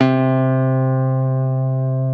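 A single clean electric guitar note, the C on the third fret of the A string, plucked on a Telecaster-style guitar and left to ring steadily with only a slight fade.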